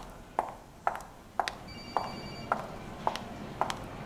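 Footsteps on a hard floor, about two a second, with a telephone ringing briefly, for under a second, about one and a half seconds in, over a low steady hum.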